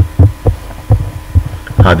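Four soft, low thumps, irregularly spaced over about a second and a half, followed by a man's voice starting near the end.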